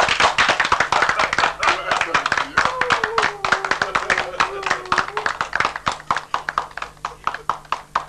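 A small group of people clapping their hands in quick, separate claps, easing off slightly toward the end, with a voice heard over the clapping in the middle.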